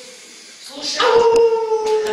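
A man's drawn-out mock howl, begun about halfway in on one long held note that slowly sinks in pitch.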